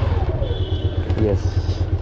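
Suzuki Gixxer 155's single-cylinder engine idling with an even, pulsing low rumble, just after being started.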